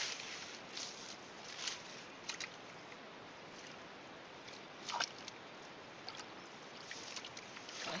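Several brief rustles and small splashes of hands searching through floating water hyacinth leaves and shallow water, the loudest about five seconds in, over a steady hiss.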